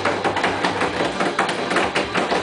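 A group round a kitchen table, with many short knocks and clatter, likely cups and hands on the tabletop, over a busy background of voices.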